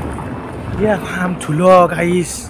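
Wind buffeting the microphone, with a man's voice in two short stretches in the second half.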